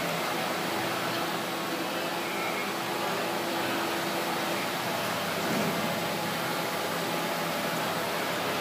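Steady, even hiss with a faint low hum: the background noise of a large indoor arena.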